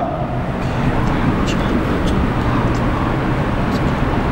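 Steady low background rumble, like road traffic, with a few faint light ticks.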